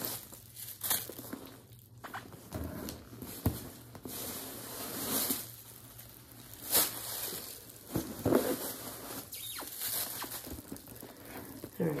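Rustling and crinkling as a Michael Kors tote bag is handled and turned over, with a few sharp clicks from its straps and hardware.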